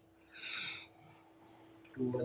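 A marker squeaking once on a whiteboard, a short high squeal lasting about half a second near the start.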